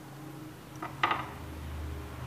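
Small metal parts of a spinning fishing reel clinking as they are handled, two light clicks about a second in.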